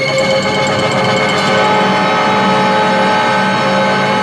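Orchestral film-score music: a loud, dense passage of held chords, with a new sustained note entering about a second and a half in.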